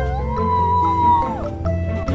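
A child howls in imitation of a coyote: one long high howl that drops off about halfway through, over background music.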